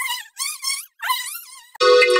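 Electronically warped voice clip, stretched into two wavering, wobbling-pitch phrases. Near the end a steady, buzzy electronic tone cuts in abruptly.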